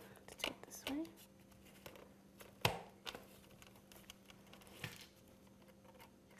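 Quiet handling of construction paper and a cardboard cereal box while a paper lever is pinned on: a few scattered clicks and light rustles, the sharpest click about two and a half seconds in.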